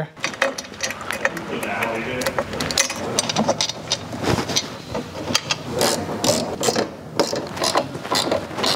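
Ratchet wrench clicking in rapid, irregular runs as bolts are driven in to mount a steel door-hinge step, with metal hardware clinking.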